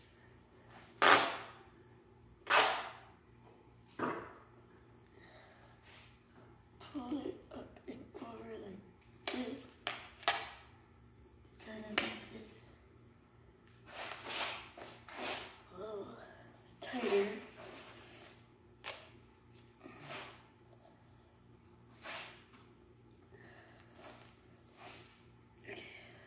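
Duct tape being pulled off the roll in short ripping strips, over and over with gaps of a second or two, the loudest rips near the start.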